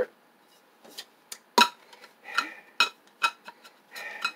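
Stainless steel double-wall thermos bottle being handled: a string of sharp metallic clicks and clinks, about a dozen in a few seconds, the loudest about a second and a half in.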